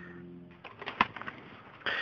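Plastic CD jewel cases being handled: a string of light clicks and taps, with one sharper click about a second in. A low steady tone fades out in the first half second.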